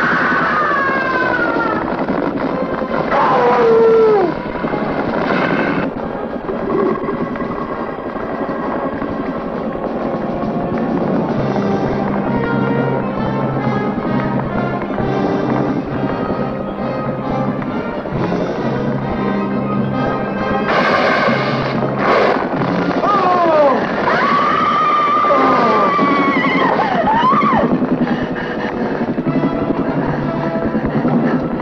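Horror film score: sustained low tones under sliding high notes that sweep up and down near the start and again near the end, with two sharp accented hits about two-thirds of the way through.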